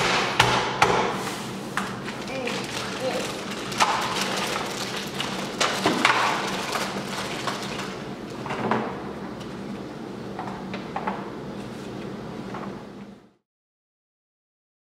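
Hard plastic toy track pieces knocking and tapping on a tabletop as they are handled and fitted together, a string of sharp clicks and knocks. The sound cuts off abruptly near the end.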